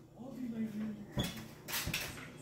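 A couple of short thumps as a child jumps from a step stool onto a mini trampoline, one about a second in and another near the end, with a faint child's voice before them.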